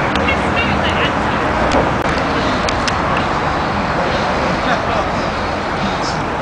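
Steady outdoor urban background noise: a continuous rumble of traffic, with faint voices near the start and a few brief clicks.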